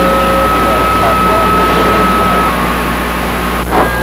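CB radio receiving a weak, fading skip signal: a steady hiss of band noise with a steady whistle from a heterodyne carrier that stops a little past halfway, under faint, garbled voice fragments.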